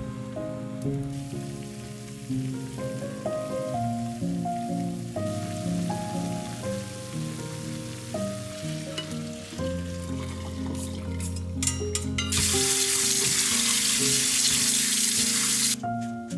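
Background music over a faint hiss of soybean sprouts boiling in a pan; a few sharp clicks, then about three and a half seconds from near the end a loud, steady rush of water into a stainless steel sink as the blanched sprouts are drained and rinsed, stopping suddenly.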